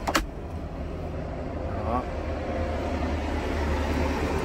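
A 2010 Toyota Vios's 1.5-litre four-cylinder engine idling, heard as a steady low hum inside the cabin. A single sharp click comes right at the start.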